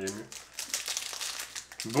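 Foil wrapper of a Pokémon booster pack crinkling as the hands tear it open at the top edge, a run of small crackles.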